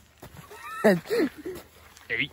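A person's voice making a short, high, wavering vocal sound a little under a second in, its pitch sliding up and down.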